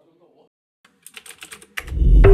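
Keyboard typing sound effect: a quick run of about half a dozen keystroke clicks in the second half, following a moment of silence. A deep music bed starts just before the end.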